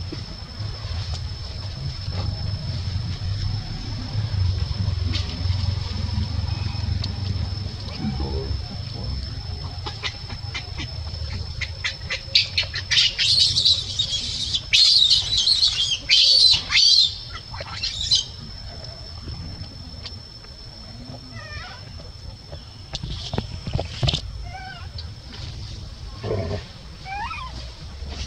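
A baby macaque screaming in a run of shrill, high-pitched cries for about five seconds around the middle, as its mother handles it roughly. A few short squeaks follow later. A thin steady high whine sits underneath throughout.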